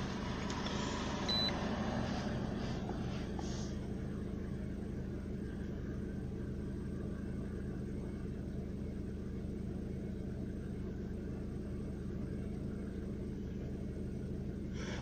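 2003 Hyundai Accent's 1.6-litre four-cylinder engine idling steadily at about 800 rpm, heard from inside the cabin as a low, even hum.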